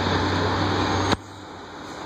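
Steady low hum of vehicle engines in traffic, cut off suddenly by a click a little over a second in, leaving a quieter street background.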